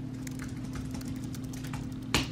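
Typing on a computer keyboard: quick, irregular key clicks over a steady low hum.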